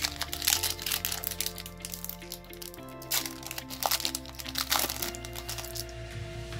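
Foil wrapper of a Pokémon Champion's Path booster pack crinkling sharply as it is opened and the cards are pulled out, with background music of held synth notes underneath.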